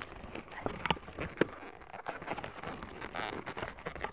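Latex 260 modelling balloons being handled and twisted: scattered rubbing squeaks and small clicks, with two sharper clicks about a second in.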